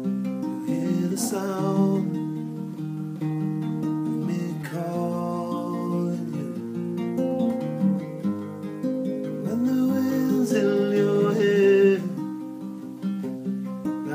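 Solo acoustic guitar playing an instrumental passage of a slow song, a continuous run of changing chords.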